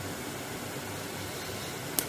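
Steady, even hiss of room tone and microphone noise, with no distinct event, and a brief click right at the end.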